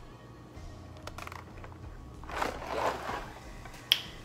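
Dry pasta rattling inside cardboard boxes as they are handled: a few light clicks, then two short shakes about half a second apart, and a sharp click near the end, over a steady low hum.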